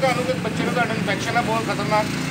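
People in a crowd talking, their voices overlapping, over a steady low hum from an idling vehicle engine.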